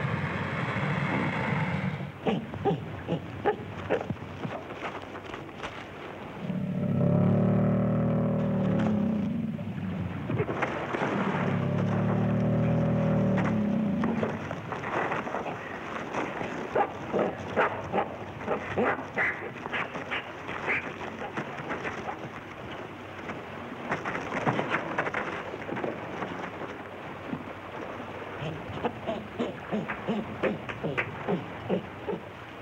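Fight sound effects of a man wrestling a crocodile: scuffling and thrashing with many sharp knocks and slaps, and two long, low growls a few seconds apart near the middle, the loudest sounds here. A short high cry opens it.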